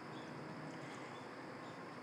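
Faint, steady outdoor background ambience: a low even hiss with no distinct events.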